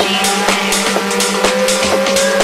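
Tech house DJ mix in a breakdown: the kick and bass are gone, leaving percussion ticks about four a second over a steady pulsing low synth note, while a synth tone rises slowly in pitch as a build-up.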